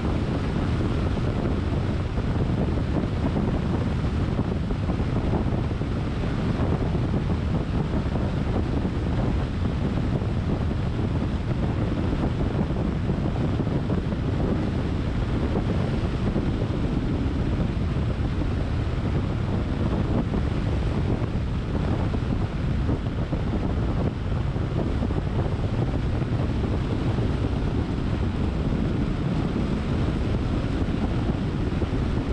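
Steady wind rush on the microphone of a camera mounted on a moving car, with the car's road noise underneath.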